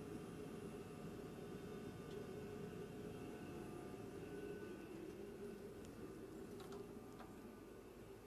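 Steady hum of a space station module's ventilation fans and equipment, with several steady tones over a soft rushing noise. A few faint ticks come in the second half.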